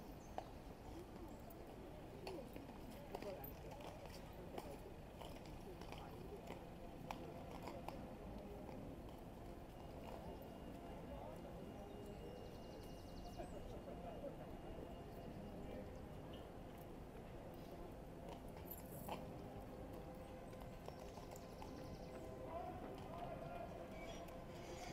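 Faint hooves of a mounted police horse clip-clopping on the road, over a low murmur of onlookers' voices.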